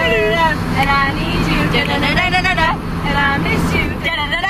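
Singing inside a moving car: a wavering, melodic voice over the car's steady road and engine noise.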